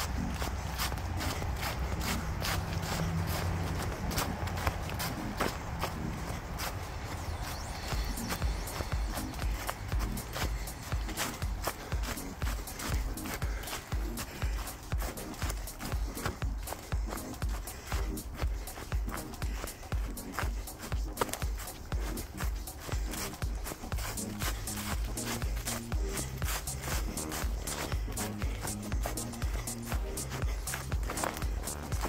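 Running footsteps crunching through dry fallen leaves on a dirt trail, settling into a steady, even stride rhythm after several seconds.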